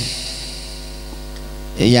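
Steady electrical mains hum from a public-address microphone system, a low buzz with a ladder of even overtones, heard in a pause between spoken words. A man's voice comes back through the microphone near the end.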